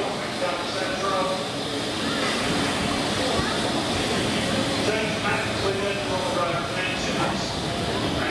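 Indistinct voices of people talking, over the steady hiss of a Great Western Railway Castle-class 4-6-0 steam locomotive standing at the platform.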